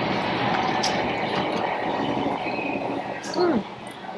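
Steady, loud background noise with no clear rhythm. Near the end a woman gives a short hummed 'mm' as she tastes the food.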